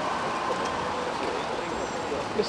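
Steady street traffic noise with indistinct voices in the background.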